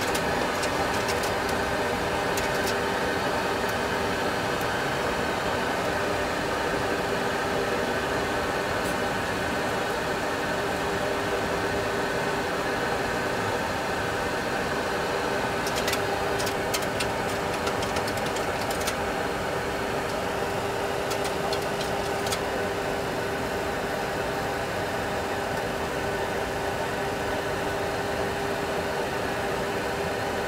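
Steady cockpit hum of a Boeing 737 Classic full flight simulator, a level engine-and-airflow drone holding several fixed tones, with a few light clicks in the middle.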